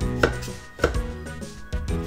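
Chef's knife chopping broccoli on a wooden cutting board: two sharp chops in the first second, over background music.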